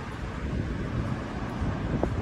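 Wind rumbling on a phone microphone outdoors: a steady, uneven low rumble.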